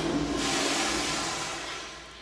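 A toilet flushing in a tiled restroom: a rush of water that fades away over the second half.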